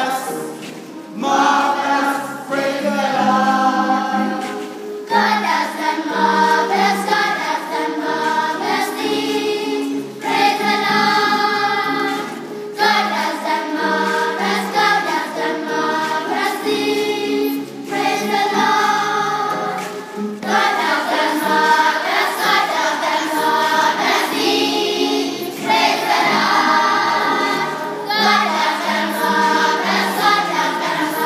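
A children's choir singing together, in phrases a few seconds long with brief pauses between them.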